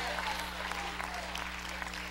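Congregation applauding, an even patter of clapping with a few faint voices calling out among it.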